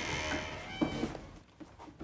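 A door creaking as it swings open, a short wavering creak about a second in.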